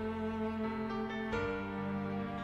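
Instrumental passage of a slow ballad played by a band with a string section, cello and violins holding sustained chords, moving to a new chord a little past halfway.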